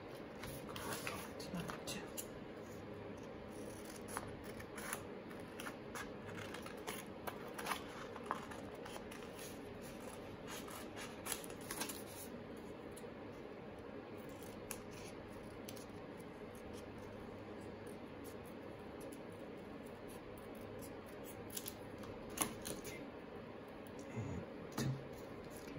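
Scissors snipping through paper: many short, quick cuts over the first half, then fewer, with a few clicks near the end.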